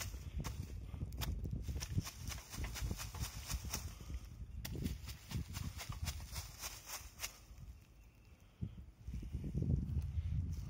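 Footsteps crunching through dry leaf litter while a hand rake scrapes and taps at smouldering leaves to put them out. The knocks and rustles come irregularly, with a brief lull near the end.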